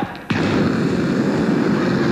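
A man making a loud noise with his voice into a handheld microphone, imitating a crowd of women stampeding. It is a steady, noisy rush with no words that starts suddenly just after the start.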